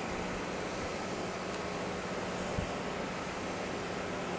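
Steady low hum and hiss of outdoor background noise with a faint steady drone, and one soft low thump about two and a half seconds in.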